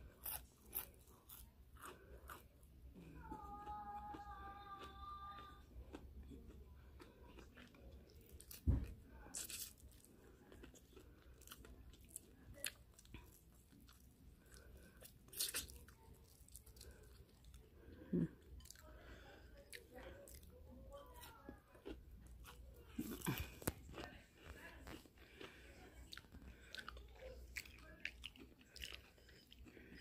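Close-miked biting and chewing of fried shrimp breaded in crushed Cheetos: sharp crunches scattered all through. A single thump about nine seconds in is the loudest sound.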